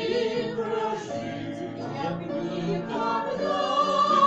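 Female vocal trio singing in harmony with upright piano accompaniment; a long held high note begins about three seconds in.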